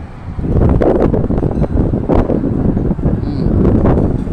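Wind buffeting the microphone: a loud, uneven rush that rises sharply about half a second in and stays up, with gusty knocks.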